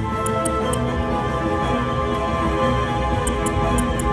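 IGT Rembrandt Riches video slot machine playing its steady game music while the reels spin. A few light ticks come in small groups near the start and again near the end.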